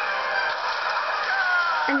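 Animal calls in a cartoon soundtrack, heard off a TV speaker: a busy mix of cries with a falling call about a second and a half in.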